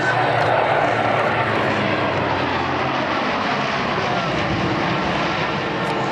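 The four turboprop engines of a Lockheed C-130 Hercules, Allison T56s, run loud in a low pass overhead, a dense rushing drone that is loudest about half a second in. A whine falls in pitch in the second half as the aircraft moves away.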